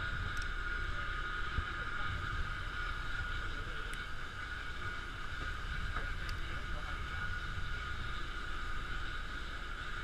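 Steady drone of a fishing boat's motor, a low rumble with a constant whine above it, unchanging throughout. A few faint clicks come through over it.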